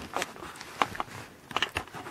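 Quiet handling noise: faint rustling with a few soft clicks scattered through.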